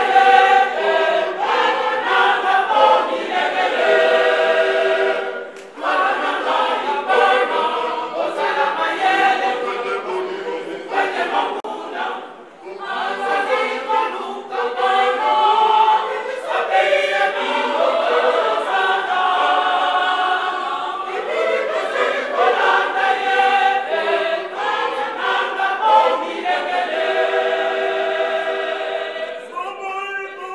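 Women's choir singing a hymn together, with two brief pauses between phrases about five and twelve seconds in.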